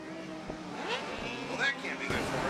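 Race car engines running as the cars circle the speedway track.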